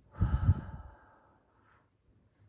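A woman taking one deep, audible breath in, strongest in its first half-second and fading away within about a second and a half.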